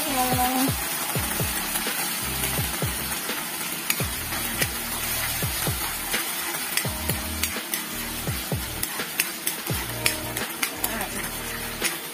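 Onion, garlic and tuna flakes sizzling in oil in a wok, with a metal ladle stirring and scraping against the pan in short repeated clicks and scrapes.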